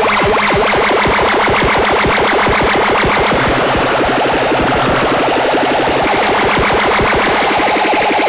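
Eurorack modular synthesizer playing a fast stream of short repeated notes through the Xaoc Kamieniec phaser module, its tone sweeping as the knobs are turned. About three seconds in, the bright top end drops away and the sound turns darker.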